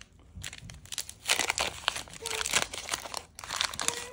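Wax paper wrapper of a 1989 Topps trading card pack being torn open and crinkled, starting about half a second in and continuing as dense, irregular crackling.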